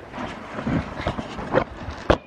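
Horses' hooves on a barn floor: a run of irregular soft knocks as they walk in, with some handling rustle.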